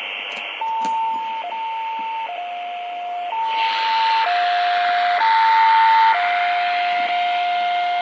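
Kenwood handheld radio receiving on the HF band at 7150, giving out hiss and a steady beeping tone that switches back and forth between a higher and a lower pitch about once a second, like a CW signal. It is interference from a Samsung phone charger plugged in nearby; the hiss grows louder about halfway through.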